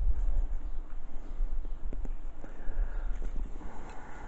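Low, uneven rumble of wind buffeting the microphone, with a few faint clicks and rustles as the lime bonsai's leaves are handled.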